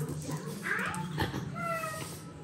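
French bulldog puppy whining: a rising squeal about half a second in, then a short, steady high-pitched whine near the end.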